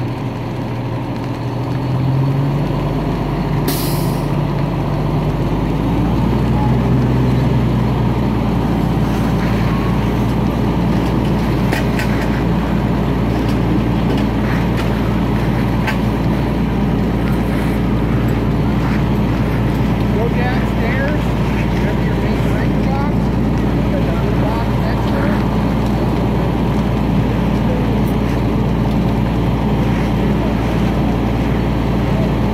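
Fire engine's diesel engine running steadily, rising in pitch and level about two seconds in and again around six seconds, as if throttled up; a short hiss about four seconds in.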